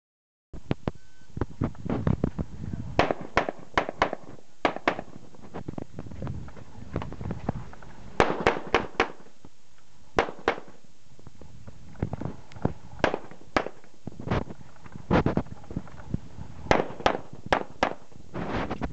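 Semi-automatic pistol fired in quick pairs and short strings, about thirty shots in all, with short gaps between strings.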